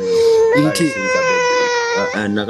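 A baby crying in one long, steady, high wail that starts about half a second in and is held almost to the end.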